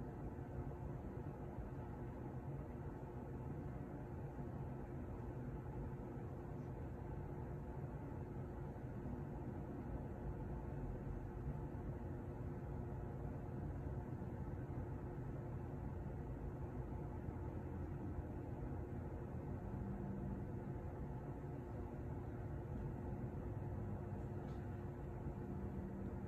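Steady low machine hum with several faint steady tones over a light hiss: room and equipment noise.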